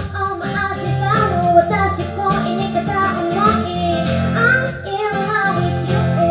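A woman singing a melody, accompanied by her own strummed acoustic guitar.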